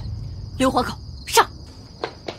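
Crickets chirping in a steady high trill, with two short voice-like calls a little over half a second and about 1.4 seconds in. A low rumble fades out in the first half.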